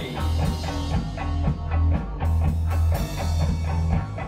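Swamp-rock band playing an instrumental bar between vocal lines: guitar over a repeating bass line, with drum kit beats and cymbal crashes.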